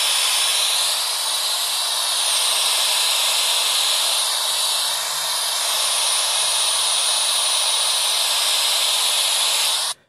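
Loud, steady hiss of white-noise static that cuts off suddenly at the very end.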